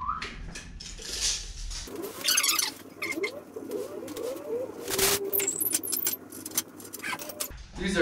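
A steel tape measure blade pulled out along 2x4 studs, with a few sharp clicks and knocks, the loudest about five seconds in, under a man's low, quiet muttering.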